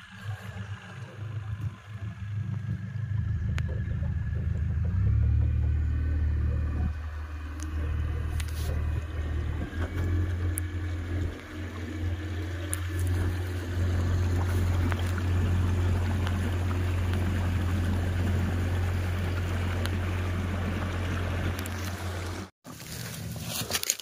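Motorboat engine running steadily with a low hum, its pitch shifting slightly about five seconds in, over a rush of water and wind.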